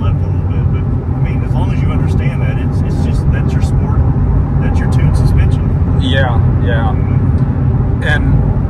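In-cabin sound of a C7 Corvette Z06, with its supercharged V8, cruising at highway speed on run-flat tyres: a steady low drone of engine and tyre noise.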